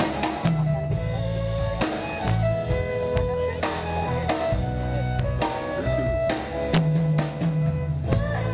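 Live country-pop band playing an instrumental passage: a drum kit keeps a steady beat under bass and guitars, with no vocal.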